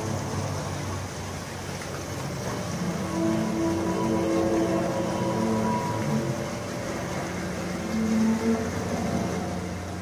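A loud, steady, horn-like drone of several low held tones whose pitches shift every second or two, of the kind reported as strange trumpet sounds in the sky. Its source is unexplained.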